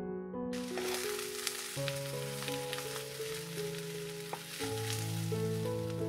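Food sizzling in a hot frying pan, a steady hiss with scattered crackles that starts about half a second in, over soft electric-piano music.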